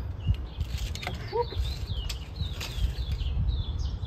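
Small birds chirping in a run of short, falling chirps, over a steady low rumble of wind on the microphone. A few sharp clicks come through as well.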